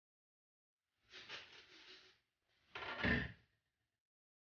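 Kitchen handling noises: a short rattle starting about a second in, then a louder knock a little before the end, as cookware such as the skillet lid or the rice bowl is moved and set down.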